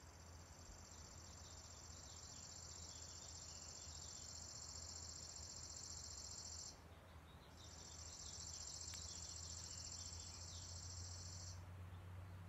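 Faint, high-pitched insect trill held steady for several seconds. It breaks off for under a second about seven seconds in, then resumes for about four seconds, over a low steady hum.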